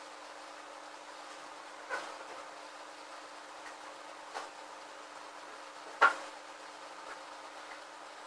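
Three short light knocks, the loudest about six seconds in, as a hand works wet gypsum filler along the edges of a gypsum-board model lying on a glass sheet, over a steady background hiss.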